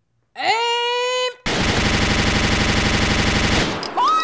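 A burst of automatic gunfire, about a dozen shots a second for a little over two seconds, stopping abruptly.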